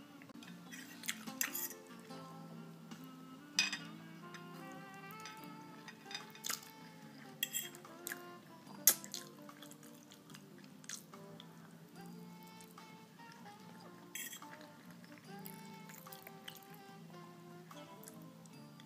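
Background music with held notes. Over it come several sharp clicks of a metal fork against a plate and dish as pasta is eaten.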